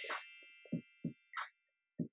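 Notification-bell sound effect: a bright bell ding that rings out and fades, with a second, shorter ding about a second and a half in.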